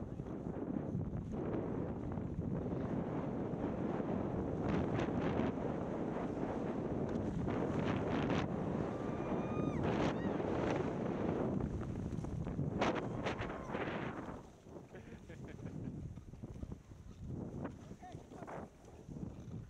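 Skis sliding over packed snow with wind buffeting the microphone, a steady rush that drops off and turns patchy about fourteen seconds in.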